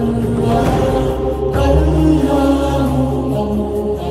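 Devotional song in a chant style: voices sing the Arabic names of God in long held notes over a steady low drone, the held notes changing pitch several times.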